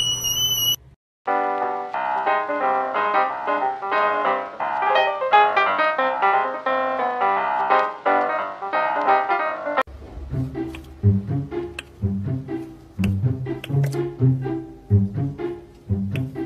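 Music: after a rising whistle-like tone that ends within the first second and a short gap, a brisk tune of quick notes plays, then about ten seconds in it changes to a different tune with a low, plucked bass line.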